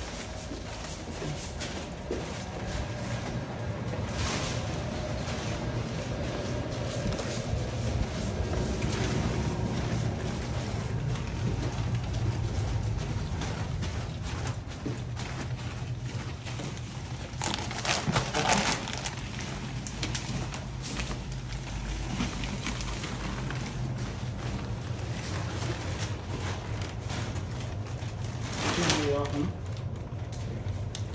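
Indistinct low voices over the rustle and handling noise of a plastic-wrapped mattress being carried and set upright.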